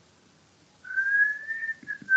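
A person whistling a single held note that starts about a second in and rises slightly in pitch.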